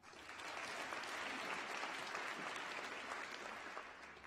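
Audience applauding a graduate walking across the stage: a steady patter of many hands clapping that starts just after her name is called and fades away near the end.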